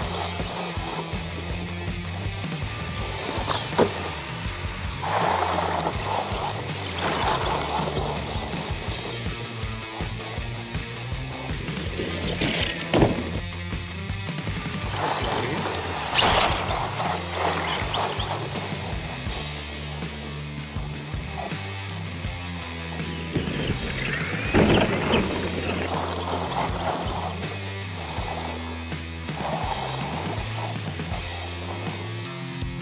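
Background music with a steady bass line, along with a few louder sweeping swells.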